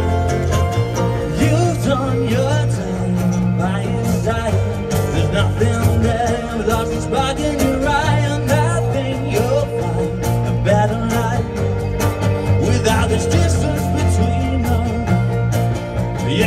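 Live band playing through a PA: acoustic guitar, electric guitar and keyboard over sustained bass notes, with sharp rhythmic strokes running through it.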